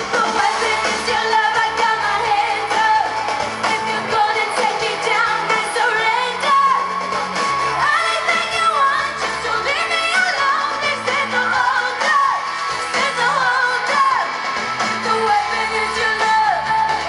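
A female pop singer singing live with a band, lead vocal over keyboards, guitar and backing singers, heard through the concert sound system.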